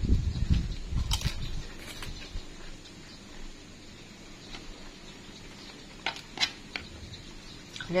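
A person eating by hand close to the microphone. Chewing and mouth sounds come with low thumps through the first two seconds or so, and a few sharp clicks fall about one and two seconds in and again around six seconds.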